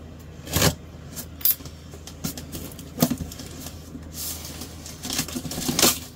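A large cardboard shipping box being handled and opened: a few sharp knocks and taps, then a longer stretch of cardboard scraping and rustling near the end.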